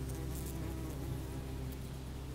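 Low buzzing of flying insects, slowly fading, with faint crackles.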